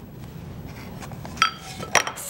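Quiet handling noise, then a single short clink about one and a half seconds in, with a brief ring: a small hard object being set down or knocked on the work table.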